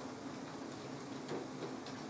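Quiet room tone: a faint steady hiss with a couple of soft clicks, about a second and a half in and near the end.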